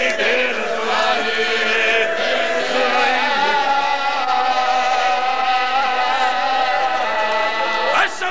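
A man's voice chanting a majlis recitation: a few short sung syllables, then one long held note from about a second in to the end.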